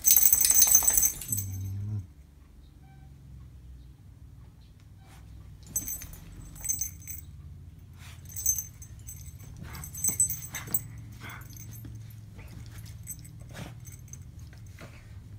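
A small dog rooting and pawing into bedding, its harness jingling with each movement: a loud jingle and rustle at the start, a short low sound just after, then a few quieter jingles with fabric rustling spaced a second or two apart.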